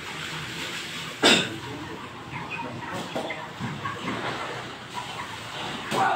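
Live broiler chickens in stacked plastic crates clucking over a noisy shed background, with one loud, short, sharp burst about a second in.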